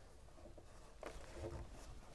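Faint handling noise: fingers touching and sliding on the vinyl jamb liner of an Andersen 400 Series double-hung window while feeling for the tilt-latch slider, with a couple of soft touches about halfway through over quiet room tone.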